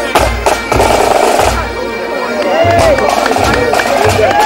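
Pipe band playing: bagpipes over a marching drum beating steadily. Voices call out over the music in the second half.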